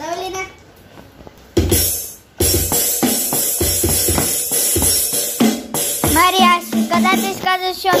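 Roll-up electronic drum pad played with drumsticks through its speaker. After a strike about one and a half seconds in, a continuous drum beat with regular strikes starts about two seconds in, and a child's voice is heard at the start and near the end.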